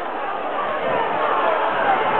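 Stadium crowd at a rugby league match: many voices shouting and calling at once in a steady din, swelling slightly as play builds.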